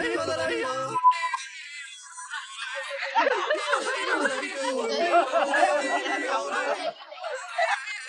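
A voice for the first second, then a short steady beep. From about three seconds in come several seconds of loud, wavering high-pitched voices or singing over music.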